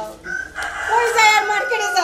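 A rooster crowing: one long crow starting about a third of a second in.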